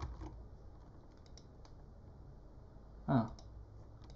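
A few faint, short clicks of computer keys and a mouse, scattered through the first second and a half, over a low room hum.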